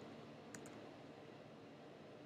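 Near silence: room tone, with a faint mouse click about half a second in.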